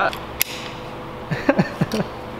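A single sharp click about half a second in, followed by a few brief vocal sounds near the end.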